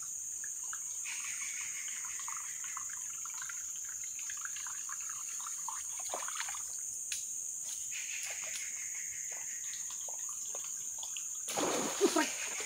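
Steady high-pitched drone of rainforest insects over a light trickling, splashing sound of water. About a second before the end there is a louder burst of splashing.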